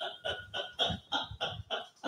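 A woman laughing hard in a rapid, even run of short breathy bursts, about four a second.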